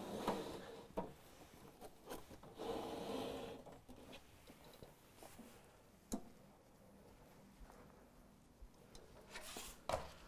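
Faint rustling and rubbing of a steak's plastic packaging being handled and opened, in two short stretches, with a few light knocks.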